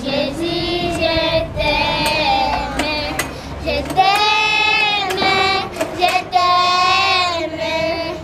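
A group of children singing a song together in unison, with a couple of long held notes in the second half.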